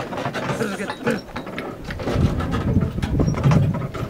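A vehicle travelling over a rough dirt track, rattling and knocking, with a low rumble that grows louder in the second half.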